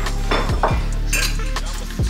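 Dishes and cutlery clinking in a stainless steel kitchen sink as they are washed by hand. Background music with a heavy bass beat plays throughout.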